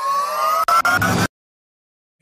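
Rising sound-effect swell ending a show intro: a tone that glides upward in pitch as it grows louder, stutters a few times, then cuts off suddenly a little over a second in.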